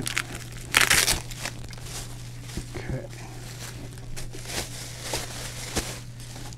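Plastic bubble wrap crinkling and crackling as it is peeled and unwrapped by hand from around an acrylic enclosure, with a loud burst of crinkling about a second in and lighter crinkles after.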